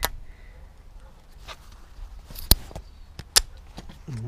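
Plastic end cap being worked onto the cut end of a camp bed's metal frame tube: light handling with a few soft clicks, then two sharp clicks a little under a second apart as the cap goes home.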